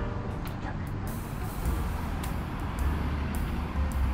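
Street ambience: a steady low rumble of road traffic.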